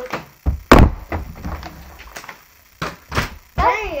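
A flipped plastic bottle hitting the table with a loud thunk just under a second in, followed by a few lighter knocks and taps. A child starts talking near the end.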